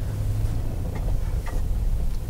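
Car driving slowly, heard from inside the cabin: a steady low engine and road rumble, with a few faint ticks about a second in.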